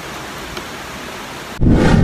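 Steady hissing noise, like rain. About one and a half seconds in, a sudden, much louder rumbling swell comes in.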